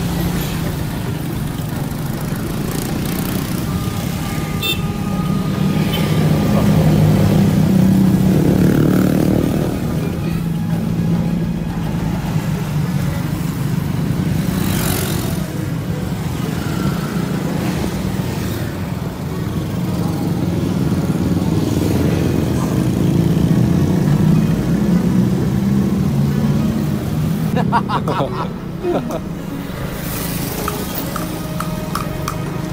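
Motorcycle engine running steadily while being ridden along a road, with road and wind noise and passing traffic. It swells louder for a few seconds early in the ride.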